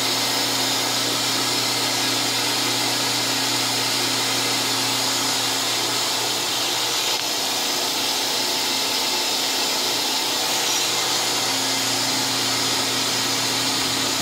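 Spindle of a Fadal 4020 vertical machining center, rebuilt less than a year ago, running at about 3,000 rpm behind the closed enclosure door: a steady machine whir with a low hum.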